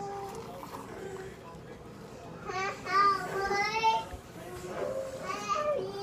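Children's high-pitched voices, talking and playing in the background, coming and going in several stretches.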